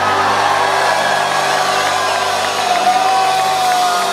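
Crowd cheering and whooping while the band's last chord rings out at the end of a rock song.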